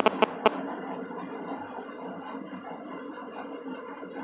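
Hot cooking oil sizzling in a kadai as marinated fish pieces are added for frying, a steady hiss after a few quick clicks near the start.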